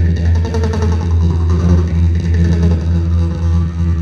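Two jaw harps playing together: a steady low drone at one pitch, with overtone melodies shifting above it and a quick plucked pulse.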